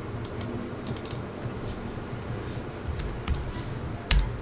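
Computer keyboard typing: a scattering of short key clicks in small clusters, as a date is typed into a field.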